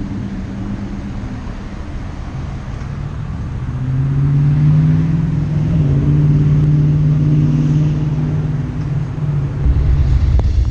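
A motor vehicle's engine running steadily, its hum growing louder about four seconds in and then holding, over a low rumble.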